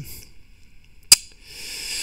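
One sharp click at the computer about a second in, the kind a mouse button or key makes, then a faint hiss near the end.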